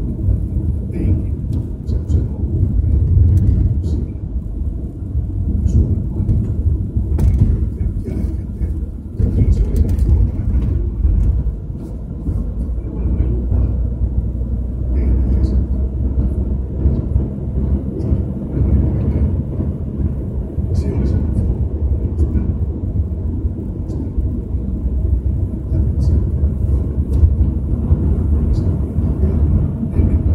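Mercedes-Benz car driving on an asphalt highway, heard from inside the cabin: a steady low rumble of road and engine noise.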